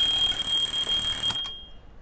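An alarm clock ringing with a steady, high-pitched ring that stops about one and a half seconds in.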